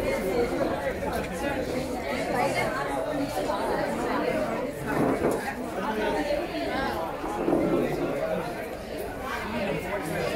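Crowd chatter: many people talking at once, a continuous babble of overlapping voices with no single clear speaker.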